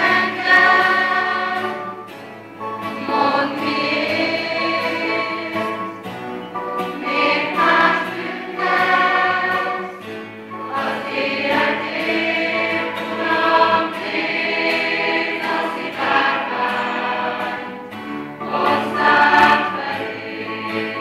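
A children's mixed choir singing a song in phrases of a few seconds, with short breaks between phrases.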